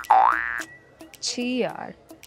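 Comedy 'boing' sound effect with a quick upward slide in pitch at the start, followed about a second later by a sound sliding down in pitch.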